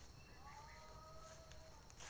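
Near silence with a few faint, thin bird calls in the middle.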